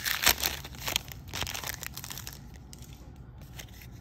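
Foil Magic: The Gathering booster pack wrapper being torn open and crinkled by hand. The crackle is loudest in the first second and a half, then fades to faint rustling.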